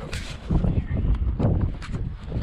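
A jumble of irregular low thumps and knocks as a body-worn camera and fishing gear are handled and jostled on a metal dock while a trout is brought into a landing net.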